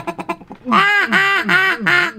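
Hand-blown duck call giving a run of about five quacks, roughly three a second, starting just under a second in, a quack that sounds like a mallard.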